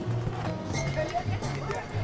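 Hoofbeats of a cantering show-jumping horse on sand arena footing, a run of uneven strikes, heard over background music with a steady bass line.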